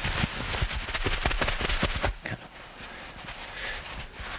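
Cloth microwavable neck wrap handled and squeezed close to the microphone: quick crackly rustling and scratching for about two seconds, then softer rustling.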